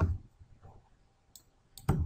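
Computer mouse clicks: a faint click past halfway and a sharp, louder click near the end as the Save dialog is confirmed.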